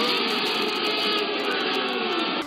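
Several people yelling together in one long held shout, thin and tinny like audio from a low-quality clip, its pitch sagging slightly near the end.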